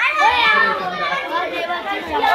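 Several children's voices chattering and calling out over one another in a large hall.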